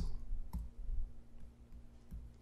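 Stylus clicking and tapping on a pen tablet as handwriting begins: one sharper click about half a second in and a few faint ticks. A low steady hum runs underneath.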